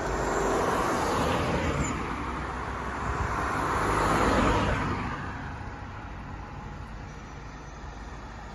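Cars passing close by on a town street: tyre and engine noise swells and fades twice, the second pass loudest about four seconds in, then settles into quieter background traffic.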